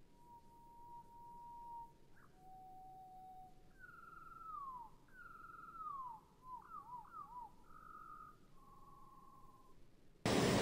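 A bird singing faint, clear whistled notes: a long steady whistle, then a lower one, then several whistles sliding downward, a few quick up-and-down notes and short trills near the end.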